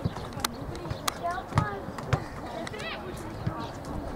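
Football pitch sounds: scattered shouts from players and coaches, with a couple of sharp thuds of the ball being kicked in the first second or so.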